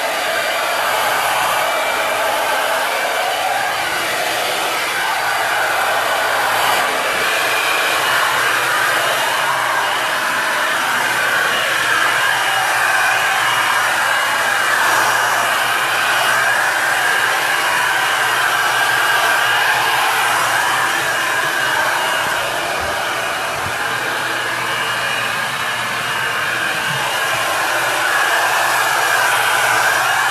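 Handheld hair dryer running continuously, blowing air through long hair as it is dried, with a steady rushing sound.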